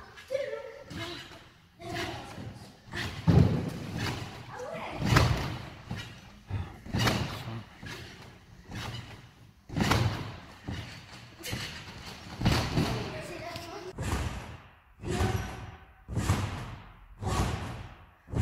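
Thumps of bodies landing on trampoline beds, repeating about every second and a half, echoing in a large hall.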